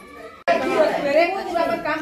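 Several people talking at once, faint at first and then louder after an abrupt cut about half a second in.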